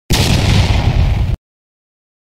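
A loud explosion-like sound effect: a burst of noise with a heavy low end, lasting just over a second and cutting off abruptly.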